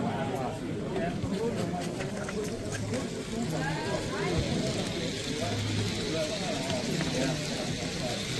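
Background voices of several people talking at once, with no clear words.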